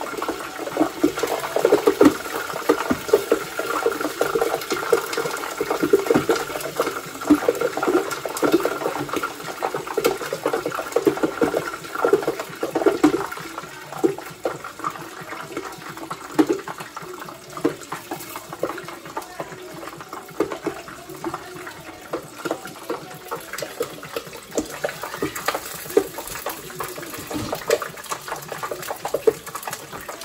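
Hot oil sizzling and popping in a covered pot as scallions, garlic and hot peppers fry in it. The popping comes from the moisture in the aromatics hitting the oil. The crackling is dense at first and thins out through the second half.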